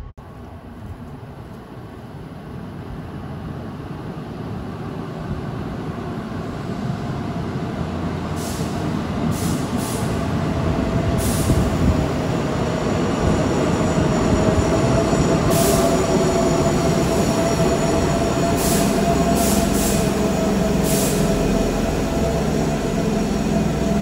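Keihan commuter train pulling in along an underground station platform, growing steadily louder for about the first half and then running loud. A steady whine sounds through much of the second half, with a few short high hisses.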